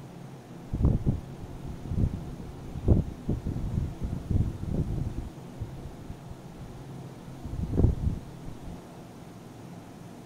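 Muffled low thumps and rumbles on the microphone, a handful of them spread through the middle, the loudest about three seconds in and near the end, over a steady low hum.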